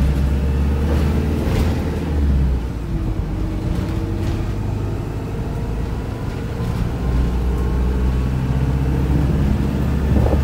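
Inside a Volvo B5LH hybrid double-decker bus on the move: a steady low engine drone and road rumble, with a few brief rattles from the body.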